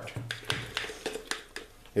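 Wooden stir stick knocking and scraping against the inside of a glass jar while mixing two-part epoxy resin: a few irregular sharp clicks.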